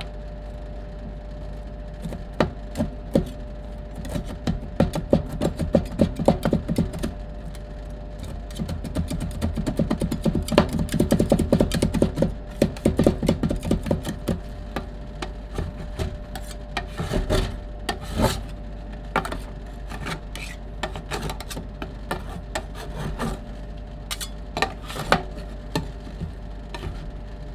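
Metal spatulas chopping and tapping on a stainless steel ice cream roll cold plate as chocolate candy pieces are cut into the cream base. The clicks are rapid and densest in the middle, then thin out into scattered taps and scraping as the mixture is spread. A steady low hum runs underneath.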